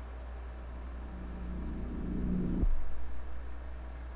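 A low swelling drone from a music video's soundtrack, building for about a second and a half and then cutting off suddenly, over a steady low electrical hum.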